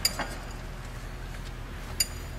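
Metallic clinks of a ratchet and socket on the crankshaft bolt as the engine is turned over by hand: a click with a short ring at the start, a smaller one just after, and a sharper ringing clink at the end, over a faint steady low hum.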